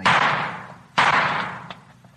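Two gunshots about a second apart, each fading out over most of a second: a radio-drama sound effect of a man being shot.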